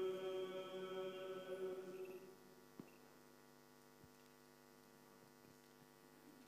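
Orthodox liturgical chant holding its final note, which dies away about two seconds in. A steady faint electrical hum is left behind.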